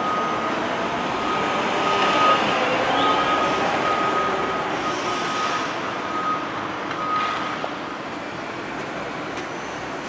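A construction vehicle's reversing alarm sounding one high tone in long repeated beeps, stopping about three-quarters of the way through, over a steady noise of site plant and traffic.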